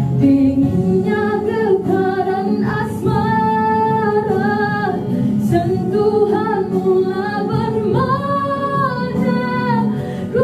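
A woman singing into a handheld microphone, gliding between notes and holding several long notes.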